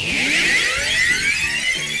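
Magical transformation sound effect: a loud, shimmering swept tone that falls in pitch over the first second, then climbs slowly.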